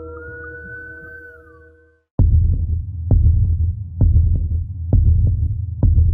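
Horror soundtrack: a fading chord of sustained ringing tones with a slow rising glide, a brief gap, then a heavy low heartbeat-like thud about once a second over a deep hum.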